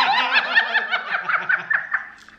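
A woman and a man laughing hard together: a quick run of high-pitched laughs over a lower one, dying away near the end.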